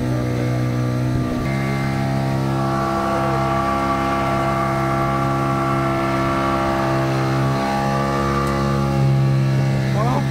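Motorboat engine running steadily with the boat under way, its pitch stepping up slightly about one and a half seconds in.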